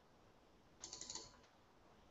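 A short run of computer keyboard keystrokes, a quick cluster of clicks lasting about half a second, a little under a second in, against near silence.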